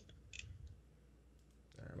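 Near silence with a few faint clicks near the start, about a third of a second apart.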